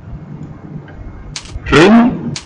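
Computer keyboard being typed on: a quick run of about three key clicks about a second and a half in, as a short label is entered into a spreadsheet cell. A man's voice sounds briefly right after, near the end.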